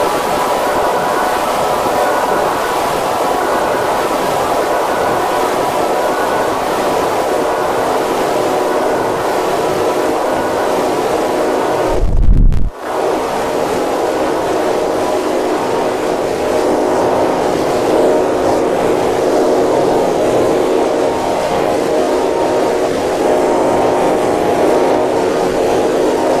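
Heavily distorted, effects-processed logo audio: a loud, steady noisy wash with faint held tones under it. About halfway through there is a brief loud low thump and a short cut-out, and then the distorted wash resumes.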